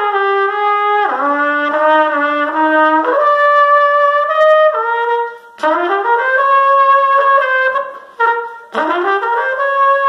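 1955 Conn 22B Victor trumpet played solo with a Jet-Tone Symphony Model C mouthpiece: a slow melody of held notes, broken twice by short breaths, the note after each breath sliding up into pitch.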